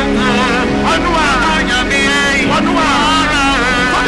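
A man singing a worship song into a microphone: long sung notes that slide and waver in pitch, over steady held accompaniment notes.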